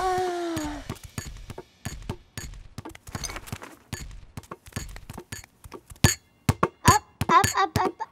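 Cartoon sound effects: a short falling vocal groan from a character, then a run of light taps and knocks that grow louder and busier near the end, mixed with short high little voice sounds.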